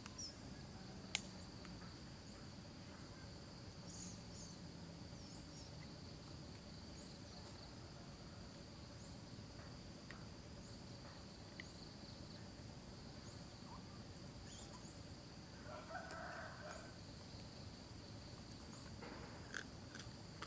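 Faint natural ambience: a steady high-pitched insect drone with brief high chirps every second or so. A sharp click about a second in and a short call around sixteen seconds in stand out.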